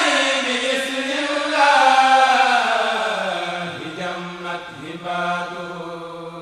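Senegalese kourel choir chanting a Mouride khassida in Arabic: a long, sliding melodic line over a steady low held note, slowly growing quieter.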